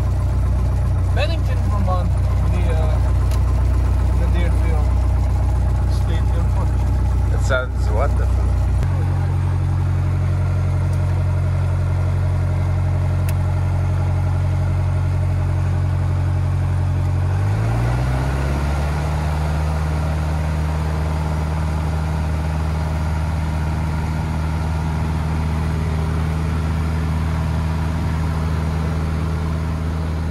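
Single-engine light plane's piston engine and propeller heard from inside the cockpit, running steadily at low power. The pitch steps up about nine seconds in, then rises smoothly as power is added around eighteen seconds in and holds at the higher pitch.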